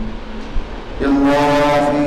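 A man's voice chanting Arabic recitation. After a brief lull he holds one long, steady note, starting about a second in.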